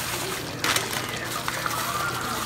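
Wet splashing and sloshing of thick tomato and meat sauce, with a short splat a little over half a second in, over a low steady hum.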